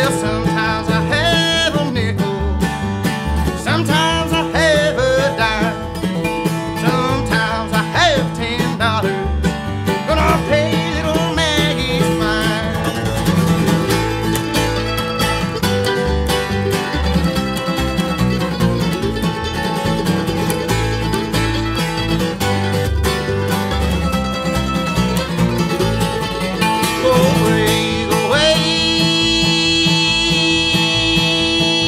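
Live acoustic bluegrass: flat-top acoustic guitar, mandolin and upright bass playing together under a male lead vocal. Near the end the voice slides up into a long held note.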